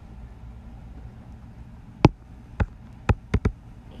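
Five short, sharp clicks in the second half, a light input click or tap while picking a colour in a drawing app, over a low steady hum.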